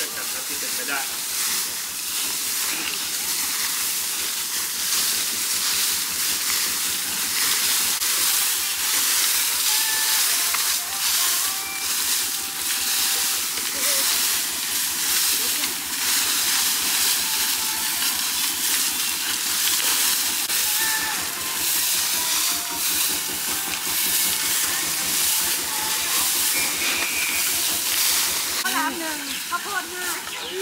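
Several rakes and brooms scraping and rustling through heaps of dry bamboo leaves on bare ground: a steady dry hiss made of many small scrapes.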